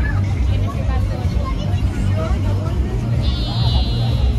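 Chatter of many people talking at once in a crowd, over a steady low rumble. A brief high trill sounds near the end.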